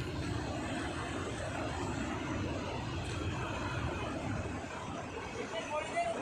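Steady, even rushing noise of a fast mountain river running over rocks nearby.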